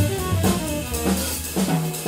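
Live small-group jazz with the drum kit to the fore: snare, bass drum and cymbal strokes over an upright bass line. The bass stops near the end, leaving the drums.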